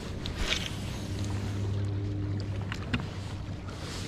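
Steady low electric hum of a bow-mounted trolling motor holding the bass boat in place. About half a second in, a rod cast swishes and line hisses off a spinning reel. A few light clicks come near three seconds in.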